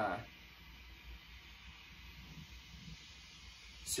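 Faint steady hum and hiss from an idling guitar amplifier, with the fuzz pedal's controls turned all the way up and nothing being played.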